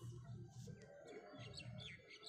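Near silence with a few faint, short chirps of a small bird in the background.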